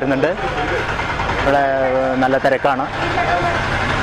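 A man speaking, with a steady background of vehicle engine noise. The noise cuts off suddenly at the end.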